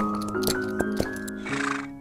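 Short title jingle music with light clicking percussion, and a brief breathy horse sound effect near the end as the jingle fades out.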